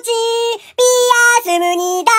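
A high-pitched voice singing a short repeated chant in three or four held notes with brief gaps between them; the last note is lower.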